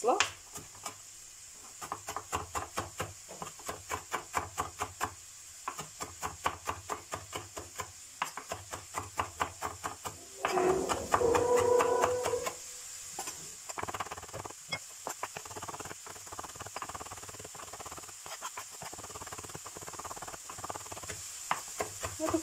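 Kitchen knife chopping fresh herbs on a plastic cutting board: repeated knocks of the blade on the board, about three or four a second at first, then faster and lighter in the second half. A faint steady hiss runs underneath.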